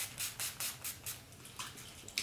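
NYX Dewy Finish setting spray pump bottle misting onto a face: a quick run of short spritzes in the first second or so.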